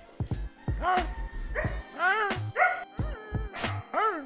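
Background music with a steady beat, over which a dog gives several short, high-pitched yips.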